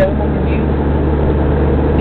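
Mitsubishi Pajero 4x4 heard from inside the cabin while driving: a steady low engine and road drone that holds an even pitch throughout.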